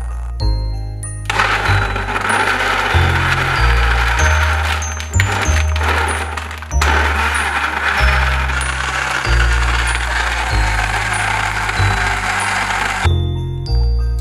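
A countertop blender runs with a steady whirring noise. It stops briefly a little before the middle, then runs again until shortly before the end. Background music with a chiming melody and steady bass plays throughout.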